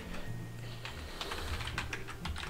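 Typing on a computer keyboard: irregular separate keystrokes as a short shell command is entered, over a low steady hum.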